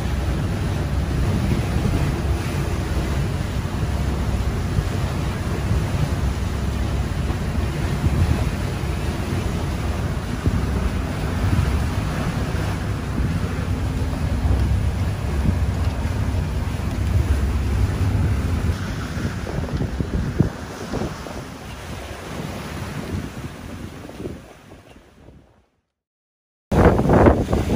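Steady rush of wind and sea around a sailboat under way in about 20 knots of wind and rough seas, with a low rumble of wind on the microphone. It fades out near the end.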